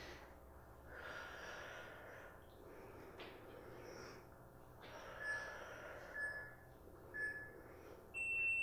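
A woman breathing hard through exertion, in soft repeated breaths. In the second half come three short high beeps about a second apart: an interval timer counting down to the end of the exercise.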